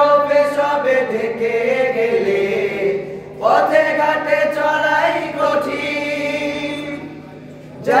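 A group of young male voices singing a Bengali Islamic song (gojol) without instruments, through microphones, holding long notes. One phrase ends about three seconds in and the next starts half a second later.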